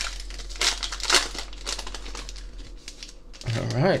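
Foil wrapper of a Playoff football trading-card pack being torn open and crinkled by hand, with a few sharp crinkles in the first second or so, then lighter rustling.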